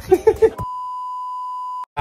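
An edited-in steady electronic beep, the tone of a TV 'please stand by' test card, held for just over a second and cut off suddenly. A short burst of laughter comes just before it.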